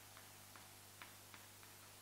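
Faint, uneven taps and short scrapes of chalk writing on a chalkboard, about five strokes in two seconds, over a low steady hum.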